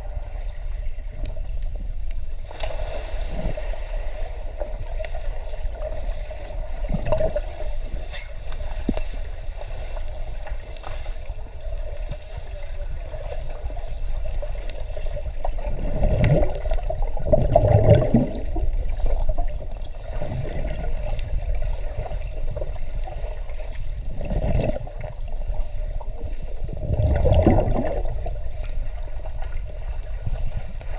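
Submerged sound in a swimming pool: a muffled, steady rumble with a faint hum, broken by surges of churning water and bubbles as swimmers struggle and kick nearby. The loudest surges come about halfway through and again near the end.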